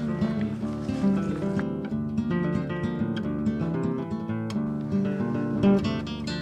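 Background music: an acoustic guitar playing a steady run of plucked notes.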